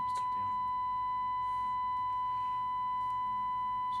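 A steady, high, beep-like test tone from an audio generator, carried as AM modulation on a Cobra 29 NW Classic CB radio's transmission and heard through a monitoring receiver. The modulation is being set and holds at about 100% at a low input level.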